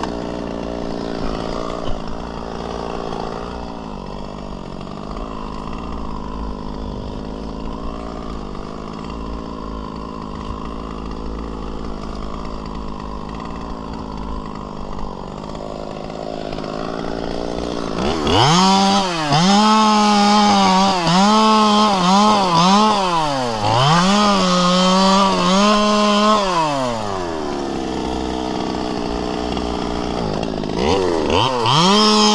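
Two-stroke chainsaw idling steadily, then revved up about 18 seconds in. For about eight seconds its pitch dips and recovers repeatedly as it cuts into palm fronds, and then it drops back to idle near the end.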